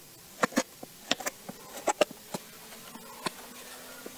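Knife slicing raw salmon on a plastic cutting board, its blade tapping the board in short, sharp clicks, several in quick pairs. A faint steady hum sets in about halfway through.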